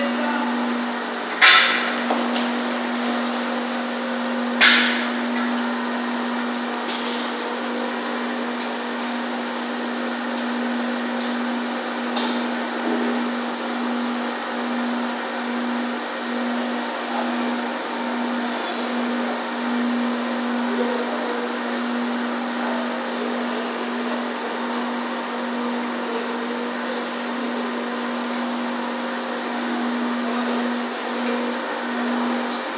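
Steady machinery hum with a constant low drone under a hiss of churning, aerated water in large fish tanks. Two sharp knocks come about one and a half and four and a half seconds in.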